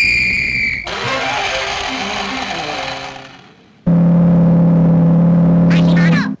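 Cartoon sound effects: a steady high whistle-like tone for about a second, then a noisy rushing stretch that fades out, then a loud, low, steady ship's horn blast of about two seconds near the end.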